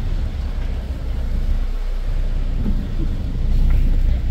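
Tour boat's engine running with a steady low rumble as the boat backs slowly out of a cove.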